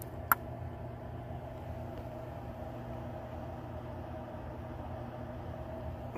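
Steady hum of an old York air handler's blower running, with a single sharp click about a third of a second in.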